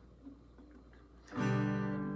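Acoustic guitar: after a quiet first second, a chord is strummed about a second and a half in and rings on, fading slowly.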